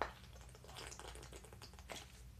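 A person drinking from a small plastic water bottle: a faint run of small clicks and crackles from the thin plastic and from swallowing, with one sharper click at the start.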